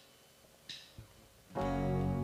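Live worship band: a few soft, evenly spaced high ticks, a count-in, then the band comes in loudly about one and a half seconds in with sustained keyboard and guitar chords over bass.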